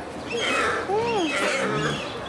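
A deer's single call about a second in, rising and then falling in pitch, over people talking. It is the loud call that spotted deer does use to find their fawns in the herd.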